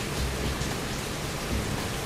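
Heavy rain, heard from indoors as a steady, even hiss.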